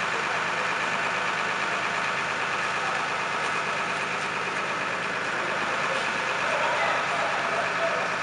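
Bus engine idling steadily, with voices in the background.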